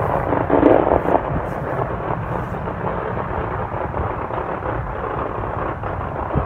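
Loud fireworks going off nearby: a continuous rumble of overlapping booms, swelling briefly near the start.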